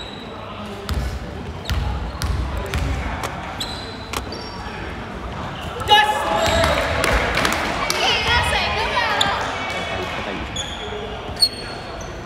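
A basketball bounced a few times on a hardwood court around a free throw, then several people's voices overlapping in the hall from about six seconds in.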